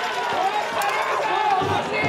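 A broadcast commentator's speech over the steady crowd noise of a baseball stadium.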